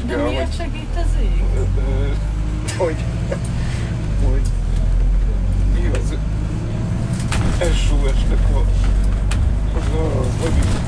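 A bus engine and drivetrain rumbling, heard from inside the cabin, as the bus pulls away from traffic lights and gets under way. Passengers' voices come and go over it.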